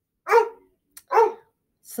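A dog barking twice, two short, sharp barks a little under a second apart.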